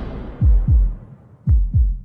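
Deep heartbeat-style thumps in a documentary soundtrack: two double beats about a second apart, each beat falling in pitch, after a noisy swell fades out at the start.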